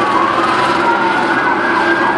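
Several emergency-vehicle sirens sound at once in slow wailing glides, one rising in pitch while another falls. A steady low hum runs underneath.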